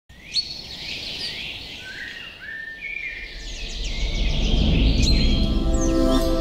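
Birds chirping and whistling in quick gliding calls, over a low rumble that grows louder through the second half. A held musical chord comes in near the end.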